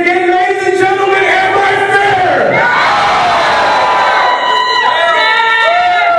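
Wrestling crowd chanting and yelling in long drawn-out calls.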